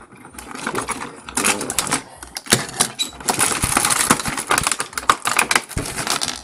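Hard plastic toy parts clicking and clattering as they are handled, knocked together and set down, in a dense, irregular run of small knocks.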